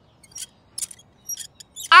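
A few faint, short metallic clinks and ticks, spaced unevenly about half a second apart.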